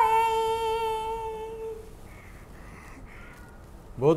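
A woman singing unaccompanied holds the closing note of an Odia song, one long steady 'oh' that fades out about two seconds in.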